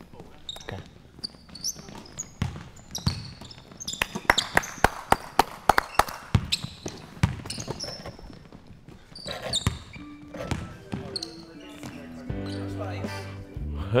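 A basketball game on a hardwood gym floor. The ball is dribbled in quick repeated bounces, loudest in the middle, with short high squeaks of sneakers on the court. Background music comes in near the end.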